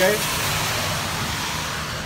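A car's tyres hissing on a wet road as it goes by, the hiss slowly fading toward the end.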